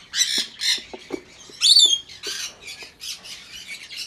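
Budgerigars squawking: a run of short, harsh, high-pitched calls, with one louder call a little under halfway through.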